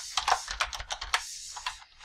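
Computer keyboard typing: a quick, irregular run of keystrokes that thins out near the end.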